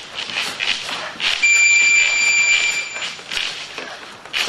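An electronic beep: one steady high tone lasting about a second and a half, starting a little over a second in and the loudest sound here. Irregular shuffling and scuffing of feet on the floor runs underneath.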